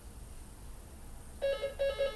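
Quiet room hum, then about one and a half seconds in three short electronic tones, all at the same flat pitch, come in quick succession.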